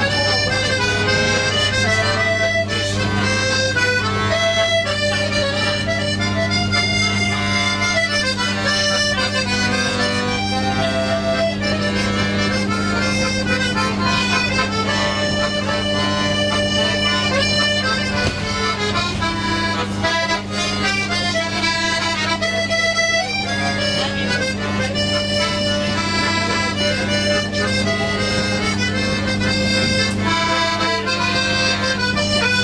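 Piano accordion played live: a busy melody of short notes over a steady low hum.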